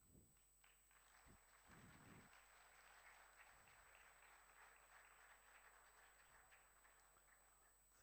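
Faint applause from a hall audience: an even patter that builds about a second in and stays steady, easing off near the end.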